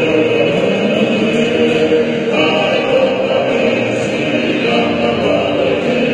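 A large group of men singing a Tongan hiva kakala song in several-part harmony, with strummed acoustic guitars.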